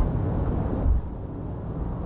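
Low rumbling noise of wind buffeting an outdoor microphone, stronger in a gust just before a second in and easing after.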